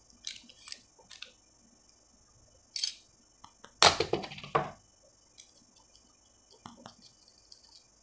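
Sharp metal clicks and clinks from a box wrench on a spinning reel's rotor nut as it is loosened and taken off the main shaft, with a louder clatter of clicks about four seconds in.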